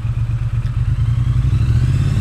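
Triumph Bonneville T100's 900cc parallel-twin engine idling at a standstill, a steady low note with a fast, even pulse.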